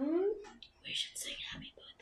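A person's held hum that slides up in pitch at the start, followed by whispered speech.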